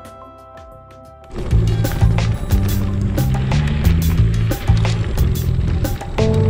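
Background music: a soft passage, then just over a second in a much louder section starts, with a stepped bass line and a steady drum beat.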